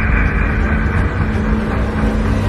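Ominous soundtrack drone: a deep, steady rumble under a high sustained tone that fades away.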